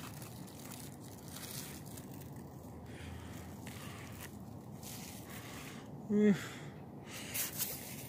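Faint, steady outdoor background hiss, with a brief rustle of pumpkin leaves being pushed aside by hand near the end.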